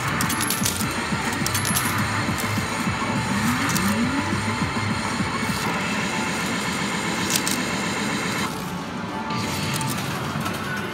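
Arcade medal game machine playing its electronic music and sound effects, with metal medals clinking and dropping throughout and a couple of short rising tones a few seconds in.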